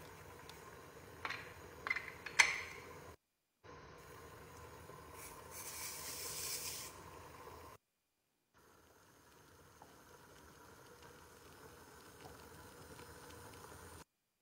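A pot of rice and vegetables boiling in water, a faint steady bubbling. In the first few seconds there are a few sharp knocks of a ladle against the pot, and about halfway through there is a brief hiss. Two short breaks of silence cut into the sound.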